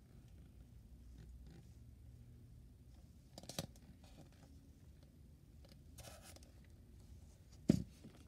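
Faint handling noise as a plastic mask on a styrofoam head is moved about: soft scrapes and rustles about three and a half and six seconds in, then one sharp knock near the end, over a low room hum.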